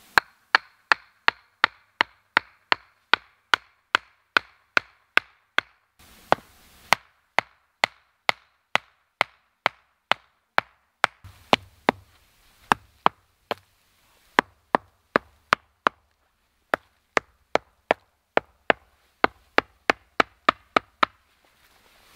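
A wooden stake being hammered into the ground: sharp knocks about three a second, in several runs broken by short pauses.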